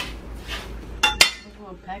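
A metal utensil clinking against a cooking pot, with two sharp ringing strikes about a second in.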